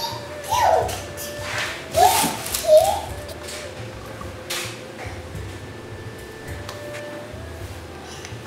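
A toddler's short, high-pitched wordless babbles, three brief sounds in the first three seconds, then only faint small sounds of handling.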